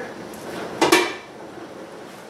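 A stainless steel pot lid clanks once against the pot, about a second in, with a short metallic ring.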